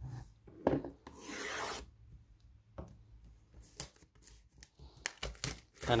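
Hands rubbing and scraping the plastic shrink wrap on a cardboard box as it is worked loose. There is a longer rasping scrape about a second in, followed by scattered small taps and crinkles.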